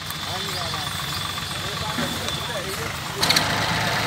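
Massey Ferguson tractor diesel engine idling steadily. About three seconds in, the engine sound becomes abruptly louder and fuller.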